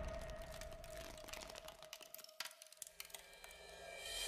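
Faint crackling and ticking sound effects for ice crystals forming, over a held musical tone that fades and cuts off about two and a half seconds in.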